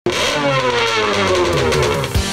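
An engine starting suddenly and loud, then falling steadily in pitch, like a fast pass-by.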